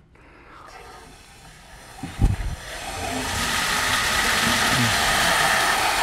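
Water rushing through the opened main drain of a wet fire sprinkler riser at the start of a main drain test: a hiss that builds steadily louder over the last few seconds. A low thump comes about two seconds in, just before the rush begins.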